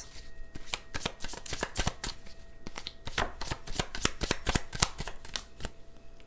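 A Romantic Confessions oracle card deck being shuffled by hand: a quick, uneven run of card clicks and flicks.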